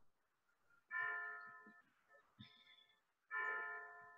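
Faint music, likely from a stringed instrument: chords that ring out and die away, one about a second in, a short higher one a little after the middle, and another near the end.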